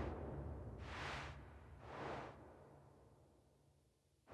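Whoosh sound effects: a swoosh fading out at the start, then two softer swooshes about a second apart, over a faint low hum.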